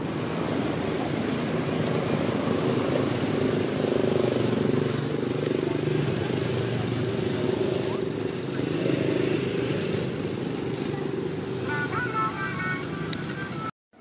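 A motor vehicle's engine running nearby, a steady low rumble that wavers in pitch. A few short high-pitched chirps come near the end.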